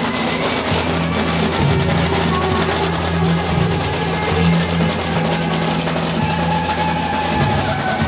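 Temple procession music: drums and other percussion playing continuously under sustained instrumental tones.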